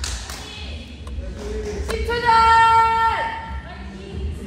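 A person's voice holding one long call that drops in pitch as it ends, after two light thumps.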